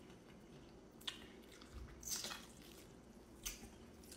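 Quiet eating sounds: a metal fork working through a bowl of rice, meat and salsa, with soft chewing and a few faint clicks about a second apart.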